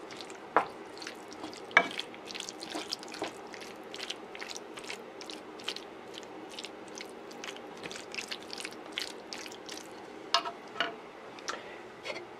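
Thick meat sauce simmering in a frying pan, crackling and popping in many small irregular ticks over a low steady hum, with a few louder clicks about half a second in, near two seconds and near the end.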